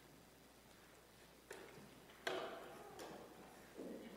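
Footsteps and shuffling of a group of people walking off together in a quiet room, with a few scattered knocks, the sharpest a little after two seconds in.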